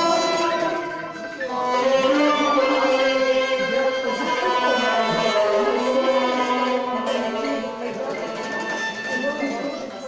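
Live Armenian folk ensemble playing: a hand-beaten drum keeps the rhythm under a sustained wind melody and long-necked plucked lutes. The music dips briefly about a second in, then comes back in full.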